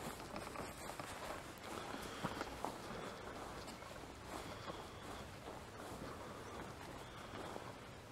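Footsteps walking through dry grass, soft irregular steps over a steady faint hiss.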